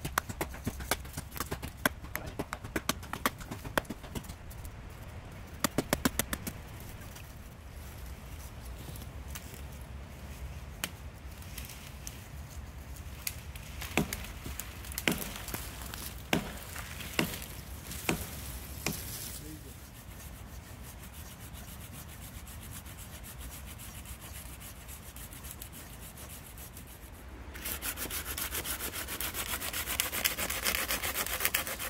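Dead wood cracking and snapping as fallen branches are broken and trampled, with a quick run of sharp cracks at the start and a few separate snaps midway. Near the end a hand saw starts cutting through a dead branch with steady back-and-forth strokes.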